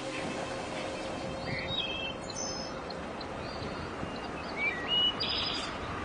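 Small birds chirping in short, scattered calls over a steady outdoor hiss, the loudest chirps a little before the end.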